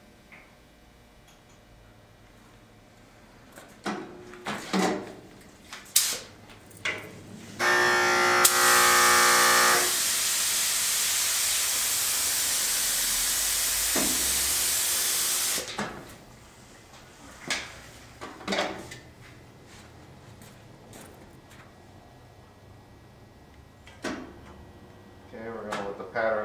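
Compressed-air gravity-feed spray gun spraying activator onto the hydrographic film floating in the dip tank. It is a loud, steady hiss of about eight seconds that opens with a brief whistling tone and cuts off suddenly. A few short knocks from handling come before and after it.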